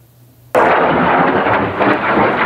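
Explosion of a Russian Kh-31 tactical missile about 600 m away: a sudden loud blast about half a second in, followed by continuous rough noise that does not die away.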